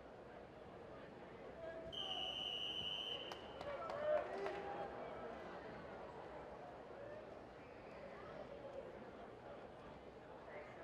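Referee's whistle: one long steady blast of about a second, a couple of seconds in, the signal for the swimmers to step up onto the starting blocks. It is followed by a shout from the spectators and the murmur of a crowd in a big pool hall.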